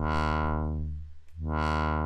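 Sustained low synthesizer drone whose filter cutoff is swept open and shut by a low-frequency oscillator, twice about a second and a half apart. Each sweep brightens quickly and closes more slowly, the shorter on-ramp and longer off-ramp of the ROTLFO's pointy wave in tilt.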